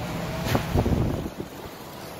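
Wind buffeting the phone's microphone in a few low rumbling gusts from about half a second to a second and a half in, then easing off.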